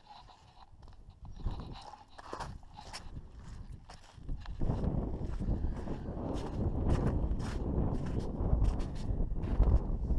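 Footsteps on snow, ice and gravel, with scattered scrapes. From about halfway through, wind buffeting the microphone comes in and stays louder than the steps.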